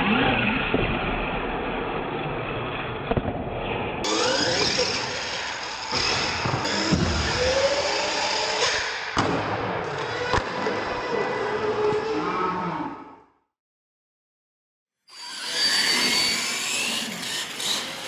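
Radio-controlled monster truck's motor whining up and down in pitch as it is driven hard and jumped, with several sharp knocks of the truck hitting the floor and ramps. The sound cuts out for about two seconds just after the middle, then the whine rises again.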